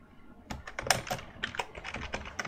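Typing on a computer keyboard: after a brief pause, a quick, irregular run of keystrokes begins about half a second in.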